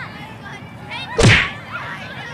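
A kick sound effect: one sharp whip-like swish about a second in, dropping quickly in pitch, as a toy football is kicked.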